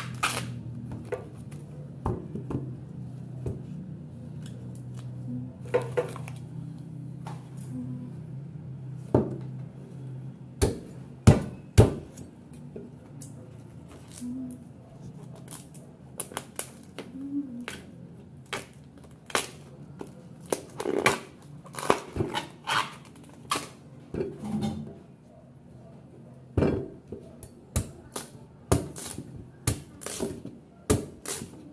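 A cleaver chopping fresh bamboo shoots on a wooden chopping block: irregular sharp knocks of the blade against the block, sometimes in quick runs of two or three. A steady low hum sits underneath in the first half and fades out.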